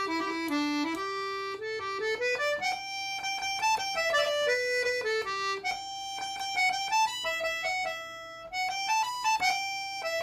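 Solo piano accordion playing a lively folk tune, the melody running up and down in quick stepwise phrases.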